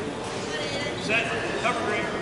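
Indistinct shouting from coaches and spectators in a large arena, with hall echo.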